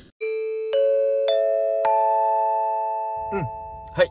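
Four bell-like chime notes struck about half a second apart, each higher than the one before. Each note rings on and overlaps the next, fading slowly.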